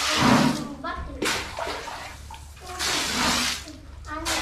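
A stream of water pouring and splashing onto a heap of gravel, wetting the aggregate for a concrete mix. It comes in two bursts, one at the start and another about three seconds in.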